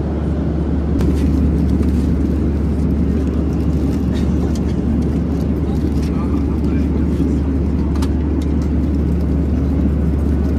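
Steady cabin noise of a Boeing 737-800 in flight, a low hum under an even rush of engine and airflow noise, with faint clicks and rustles from about a second in.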